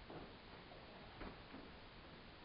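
Near silence: room tone with two faint knocks about a second apart.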